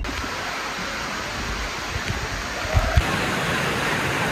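Waterfall: a steady rush of falling water, with a couple of low thumps about three seconds in.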